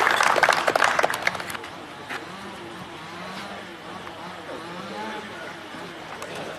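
Audience applauding briefly, dying away after about a second and a half, then faint voices murmuring.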